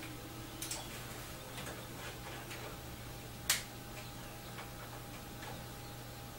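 Faint scattered clicks and taps of small objects being handled, with one sharper click about three and a half seconds in, over a steady low hum.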